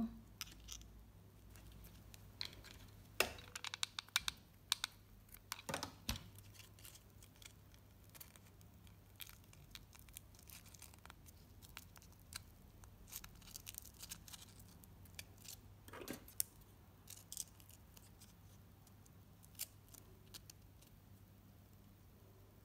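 Fingers handling and pressing glitter foam (foamiran) petals as they are glued together in a ring. Faint, scattered scratchy rustles and small clicks, with a few louder clicks.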